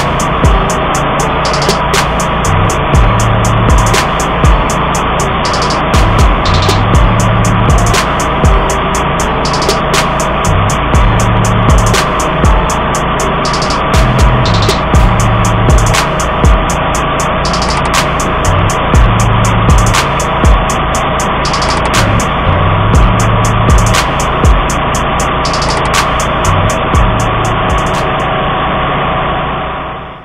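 A DR walk-behind field and brush mower's engine running steadily under load as the mower cuts through tall grass and weeds. The low hum swells and eases every second or two, with sharp ticks throughout. The sound falls away sharply at the very end.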